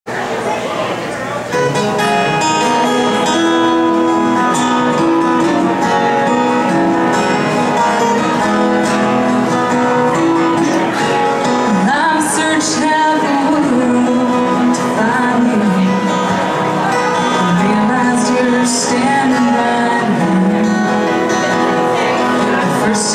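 Acoustic guitars playing a country song live, a lead guitar over rhythm guitar; the music starts abruptly.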